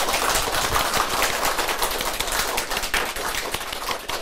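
Studio audience applauding: many hands clapping together in a dense, steady patter.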